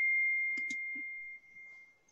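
A single high, steady pure tone that rings on and fades away over about two seconds, like a chime or bell, with two faint clicks a little over half a second in.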